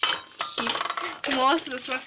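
Groceries being handled on a counter: plastic bottles and drink cartons clattering and knocking together, with a sharp knock right at the start. A voice runs over the second half.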